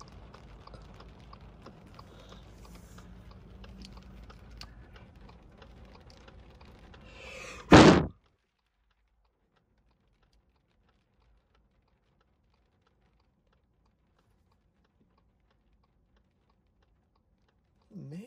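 Light rain ticking on a parked car's windshield and body, many small scattered taps over a quiet hiss. About eight seconds in there is a sudden loud burst, and then the sound cuts out to dead silence.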